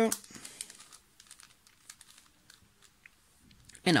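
Faint clicking and rattling of a plastic Axis Megaminx twisty puzzle being turned by hand. The clicks are busiest in the first second and then come only now and then.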